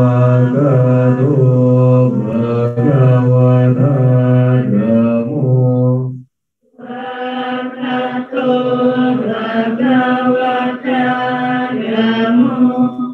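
Buddhist devotional chanting on a near-steady pitch, with a short break for breath about six seconds in before it carries on.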